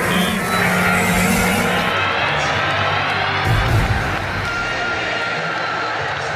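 Loud intro music with a deep boom about three and a half seconds in.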